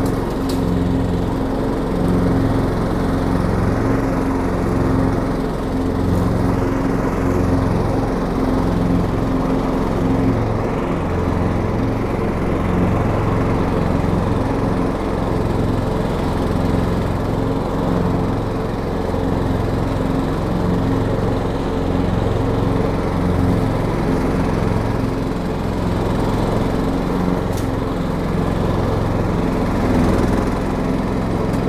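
STIHL RT 5097 ride-on mower running steadily as it drives across grass. Its engine note swells and eases a little over and over as the load changes.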